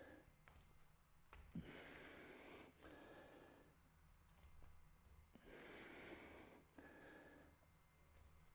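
Near silence, with two faint breaths each about a second long, one near two seconds in and one near six seconds in, from a person exerting himself in hand-supported jumps.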